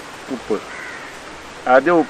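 A man speaking pauses for over a second and starts talking again near the end. During the pause a faint bird call sounds in the background.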